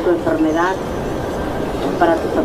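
A person's voice sounds briefly in the first second, with a wavering pitch, over a steady low rumble.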